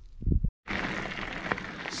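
Wind on an action camera's microphone: a low buffeting rumble, a brief cut to silence about half a second in, then steady wind hiss.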